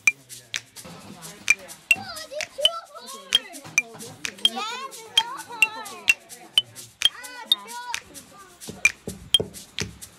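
Children's voices chattering over background music, with frequent short clicks and taps as hands scoop sticky rice from steel pots and pack it into bamboo tubes.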